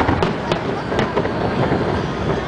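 Aerial fireworks shells bursting, with about four sharp bangs in the first second, one after another, over a continuous background din.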